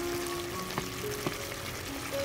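A metal ladle stirring a pot of simmering beef rib soup, the broth bubbling, with two light clicks of the ladle against the aluminium pot. Soft background music of held notes plays over it.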